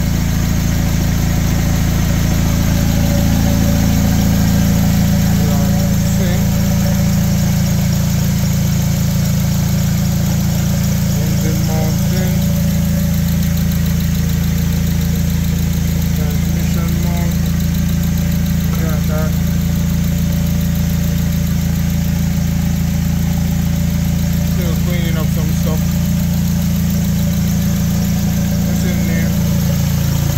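Honda Accord K24 2.4-litre inline-four engine idling steadily, with a slight shift in its note a couple of times. It is running on a newly fitted standalone ECU whose idle speed is still being sorted out.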